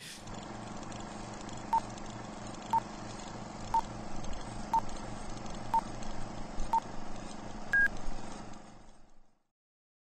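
Electronic countdown beeps over a steady hum and hiss: six short beeps one second apart, then a longer, higher-pitched beep about eight seconds in. It works as a sync cue for starting the film alongside the commentary. The hum fades out shortly after the last beep.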